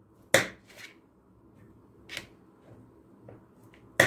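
Kitchen knife cutting almonds in half on a cutting board: a few sharp, separate clicks as the blade goes through a nut and strikes the board, the loudest about a third of a second in and another about two seconds in.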